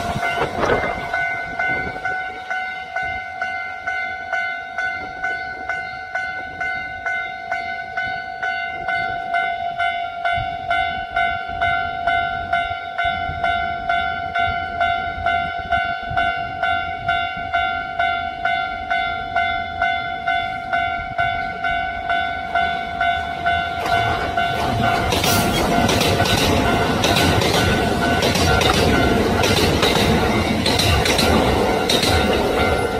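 A railway level-crossing warning bell rings as an even, ringing ding about twice a second. About 24 seconds in, the noise of a Kintetsu electric train passing rises over it, with the clatter of wheels over rail joints.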